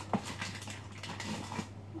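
Light knocks and small rattles of items being moved about on a kitchen wall-cupboard shelf, with one sharper click just after the start, over a steady low hum.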